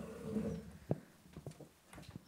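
A brief faint murmur of a voice, then one sharp click about a second in and a couple of lighter clicks.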